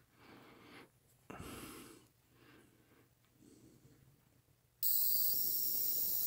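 Faint breathing at first; then, about five seconds in, a steady shrill high-pitched tone with hiss cuts in suddenly. It is a 555-timer oscillator driven through an LM386 amplifier into an ultrasonic tweeter, sounding again and so still working after 6 V DC was accidentally put across it.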